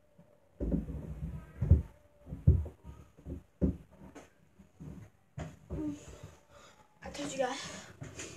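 A boy gulping down a drink of mixed dipping sauces: loud, irregular swallows with gasping breaths between them. Near the end he stops and groans 'God'.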